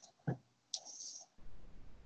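Faint clicks: a sharp one early on and another near the middle, followed by a brief hiss.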